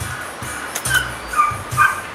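Background music, with three brief high-pitched calls from a pet animal: about a second in, at about a second and a half, and near the end.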